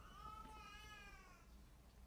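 A small child's faint, high-pitched voice drawn out in one long, slightly arching call that lasts about a second and a half and then fades.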